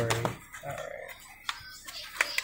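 Hands handling white foam packing around a lamp: a brief rub of foam about halfway through, then a couple of light clicks near the end.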